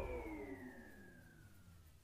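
The dying tail of a cartoon's magic sound effect: a ringing tone of several pitches that all glide slowly downward together as it fades away.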